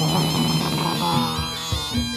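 Live Javanese gamelan music for a horse-trance dance: a reedy wind instrument plays a wavering melody over drum strokes and low steady tones, with a crash at the start that dies away over about a second and a half.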